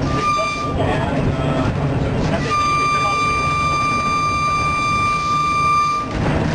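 Interurban trolley car's horn, worked by an overhead pull cord: a short toot, then one long steady blast from about two and a half seconds in, sounded for a road grade crossing, over the low rumble of the car running on the rails.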